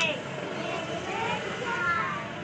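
A vehicle driving past on the road, heard as a steady rushing noise, with children's voices faintly over it.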